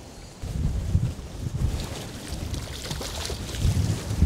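Strong wind buffeting the microphone in uneven gusts, a rumble that picks up about half a second in, over the wash of choppy water.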